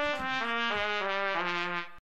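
A newly made Getzen trumpet being played to test its sound quality: a quick run of short notes stepping downward in pitch, at about four notes a second. The notes fade and cut off just before the end.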